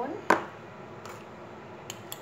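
A small metal spoon knocks once, sharply, against a glass dish as garlic paste is shaken off it into the tuna mixture. A faint click follows near the end.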